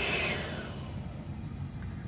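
Hair dryer running on its heat setting, a steady rushing hiss with a high whine. About half a second in it is switched off and the sound dies away over the next half second, leaving a quieter low hum.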